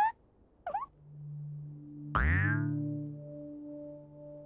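Children's TV sound effect: sustained musical tones swell in, then about two seconds in a quick falling swoop sounds, settling into a held chord.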